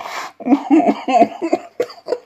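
A man laughing: a breathy, cough-like burst, then a quick run of short voiced 'ha' pulses.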